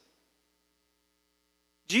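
Near silence: room tone with a faint steady hum, until a man's voice starts again at the very end.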